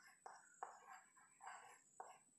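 Chalk writing on a blackboard, faint: a few short scratchy strokes, each starting sharply and fading.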